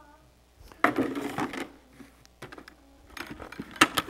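A nylon cast net being handled in a plastic bucket: a rustle about a second in, then scattered small clicks and a sharper click near the end.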